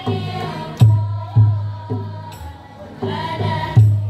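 Marawis ensemble: a group of girls' voices chanting an Islamic devotional song in unison, accompanied by deep strokes of marawis hand drums about every half second to a second.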